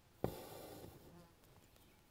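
Embroidery floss being pulled through a stretched linen canvas after a needle stitch: a sudden rasp about a quarter of a second in that trails off within a second.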